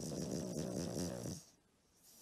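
A sleeping pug snoring: one snore about a second and a half long.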